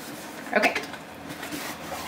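A short spoken "okay", then faint scraping and rustling as a cardboard box is handled.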